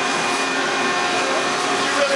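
Steady machine-shop noise from CNC machine tools running: a constant hiss with several steady humming tones.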